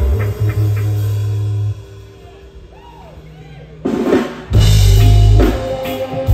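Live reggae band playing with heavy bass and drum kit. Less than two seconds in, the bass drops out and the music goes quiet for about two seconds. A burst of drum hits then brings the full band back in.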